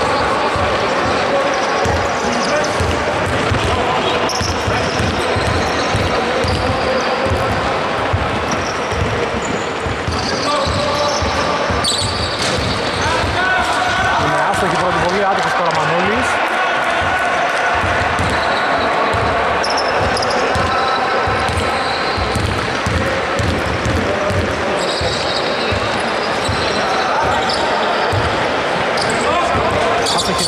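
A basketball bouncing on a wooden court floor, with repeated thuds throughout that echo in a large hall, over players' voices.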